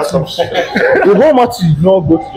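Young men's voices talking over one another, with chuckling.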